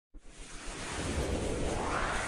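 A rushing whoosh sound effect with a low rumble, swelling steadily louder from just after the start, the build-up of an animated logo intro.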